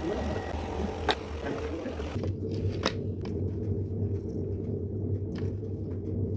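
A steady low hum with a few sharp clicks and light scraping from small metal hand tools working a gold necklace.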